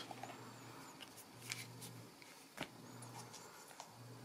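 Faint, sparse handling sounds: fingers tapping and rubbing on the AirPods charging case and its cardboard box tray, with one sharper click about two and a half seconds in.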